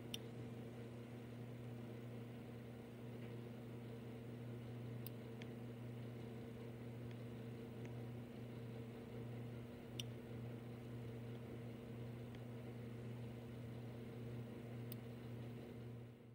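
Faint steady electrical hum with room tone, with a few faint sharp clicks about every five seconds.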